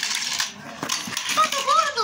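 Hard plastic toy car clicking and clattering on a tile floor after a short hiss as it is moved, followed near the end by a child's high, wavering vocal sound.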